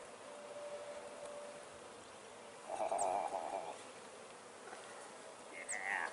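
Honey bees buzzing around the hives: a steady faint hum, with a louder, closer buzz about three seconds in and a brief louder sound near the end.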